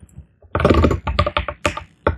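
Fast typing on a computer keyboard: a quick run of keystrokes starting about half a second in.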